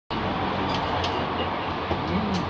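Steady restaurant background noise: a continuous low hum and rumble with a few faint clicks.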